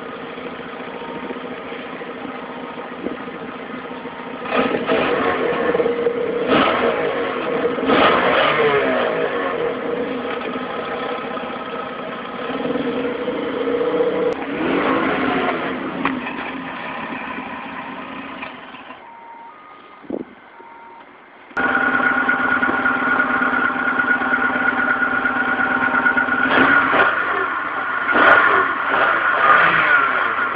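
1997 Volkswagen Jetta GT's 2.0-litre ABA four-cylinder idling through an aftermarket exhaust tip, blipped up and back down several times. About two-thirds through it drops away, then comes back suddenly louder at idle, with a few more revs near the end.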